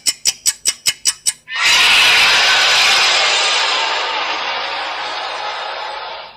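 Movie trailer sound effects: an even, rapid ticking of about seven clicks a second, like an old film projector running, then about a second and a half in, a sudden loud, harsh blast of noise that fades slowly over the next few seconds.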